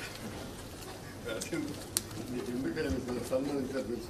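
Indistinct low voices murmuring, with a single sharp click about halfway through.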